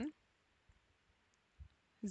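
Near silence with a few faint computer keyboard keystrokes, the loudest a soft low tap about one and a half seconds in.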